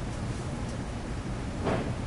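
Room background noise: a steady low rumble, with a short soft sound near the end.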